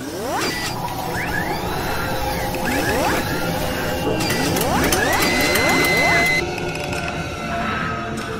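Sound effects for an animated graphics outro: mechanical clicking and whirring, with rising sweeps that repeat roughly every two seconds and a brief held high tone a little past the middle.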